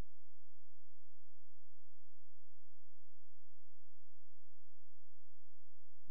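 A steady, unwavering low electronic tone, pure and sine-like with faint higher overtones, that cuts off abruptly near the end.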